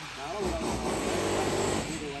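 A steady motor-vehicle engine sound, with a brief faint voice about half a second in.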